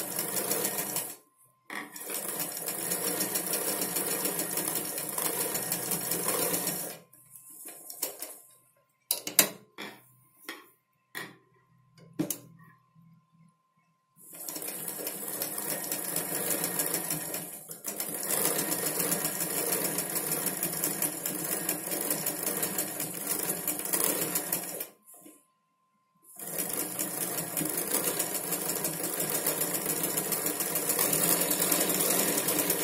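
Sewing machine stitching a patch onto fabric in long runs, with a short stop about a second in. It stops for several seconds midway, a spell of scattered clicks and knocks, then runs again with another brief stop near the end.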